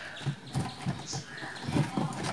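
Irregular light knocks and rubbing from hands pulling and knotting string around a hollow flex-board box.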